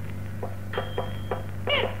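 Nadaswaram, the South Indian double-reed wind instrument, playing short detached notes from about half a second in, then a bending, sliding phrase near the end. A steady low hum runs underneath.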